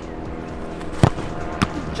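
A football kicked hard, then about half a second later a second, softer thud as the ball reaches the goalkeeper.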